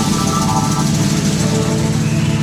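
Live rock band playing a steady low chord on bass and guitar, with drums and cymbals, and a tambourine shaken.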